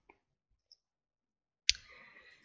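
A single sharp computer mouse click near the end, against near silence.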